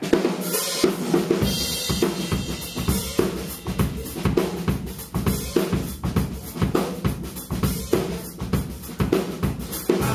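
Live band starting a song: a drum kit keeps a steady beat of about two strokes a second with kick, snare and cymbals, under a Stratocaster-style electric guitar. The low end of the kick and bass comes in a little under a second in.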